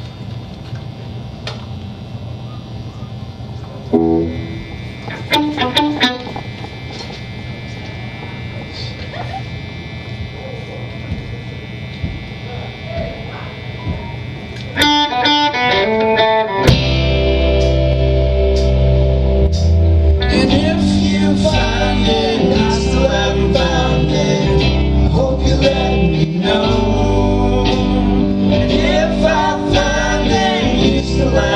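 Rock band playing live, heard through the room: a sparse, quiet opening with a few scattered electric guitar notes over amp hum, then a quick run of notes before the full band, with bass and drums, comes in loud about halfway through.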